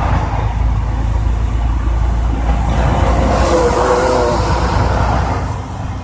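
Semi-truck's diesel engine and tyres on a wet road heard from inside the cab: a steady low drone with road hiss.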